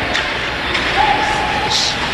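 Ice hockey rink ambience during play: a steady wash of spectator noise and play on the ice. A faint held tone runs through the second half, and a brief high hiss comes near the end.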